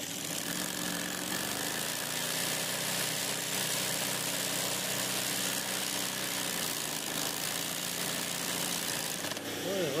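Electric sewing machine used for free-hand machine embroidery, running steadily with its needle stitching rapidly through fabric in a hoop.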